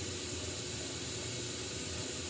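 Glassworking torch flame hissing steadily as a borosilicate glass blank is heated and pulled out.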